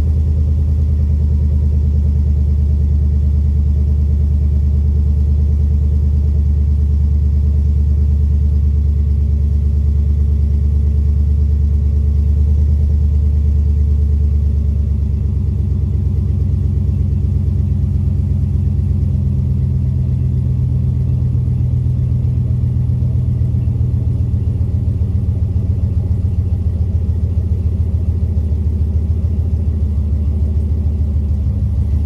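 The engine of a 2019-or-later Ram 1500 pickup idling steadily, with a low rumble. Its note shifts about halfway through.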